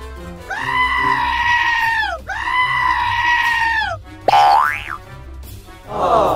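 Comedy sound effects laid over background music: two long held pitched calls, each about a second and a half, followed about four seconds in by a quick rising whistle-like slide.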